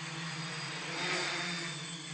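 Small quadcopter's propellers and motors buzzing steadily in flight, swelling slightly about a second in.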